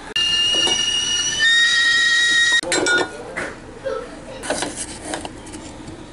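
Stovetop kettle whistling: a steady high whistle that drops to a lower pitch partway through and cuts off suddenly about two and a half seconds in. Light clinks of kitchenware follow.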